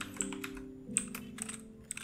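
Computer keyboard being typed on: a string of separate, quick keystrokes entering a shell command.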